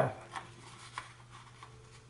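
A sheet of paper being bent over by hand to fold it in half: faint rustling with soft ticks about a third of a second and a second in.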